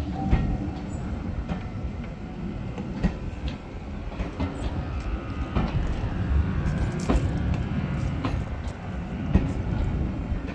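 Steam-hauled passenger coaches rolling slowly past, a low rumble with the wheels clicking over the rail joints now and then.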